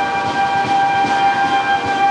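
Processional brass band holding one long sustained chord of a Holy Week march, with drum strokes underneath.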